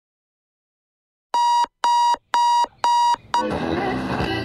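Electronic alarm clock beeping four times, about two beeps a second, then stopping. Music starts quieter just after, near the end.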